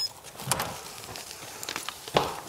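Door handle and latch of a keypad-locked door being worked and the door pulled open after the code is accepted: a sharp click about half a second in, then a few lighter clicks and rattles near the end.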